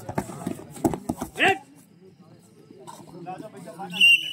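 Kabaddi players thudding and scuffling on foam mats during a tackle, with several sharp knocks in the first second. Spectators shout over it, with one loud rising yell about one and a half seconds in, then a lower hubbub of voices.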